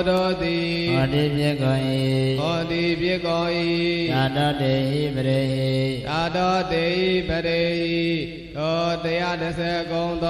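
A Buddhist monk chanting a Pali scripture passage in a slow, sung recitation: long held notes on a steady pitch that glide between phrases, with a short breath about eight seconds in.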